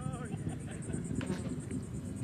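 A faint, steady low rumble, with a brief faint voice near the start.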